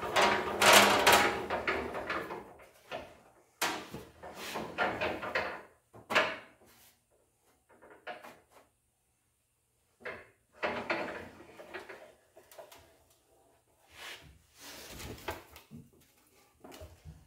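Manual sheet-metal bending brake worked by hand, folding a steel panel's edge: metal scraping and clunking as the clamp and bending leaf are moved. It comes in several bouts, loudest in the first couple of seconds, with a quiet gap in the middle.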